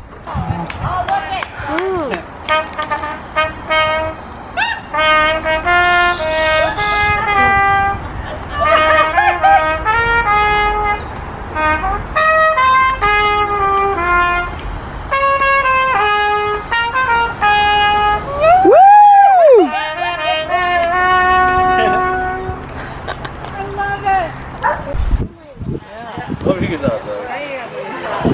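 Music led by a trumpet-like brass melody of held notes, with voices underneath. About three-quarters of the way through comes one loud swoop that rises and falls in pitch.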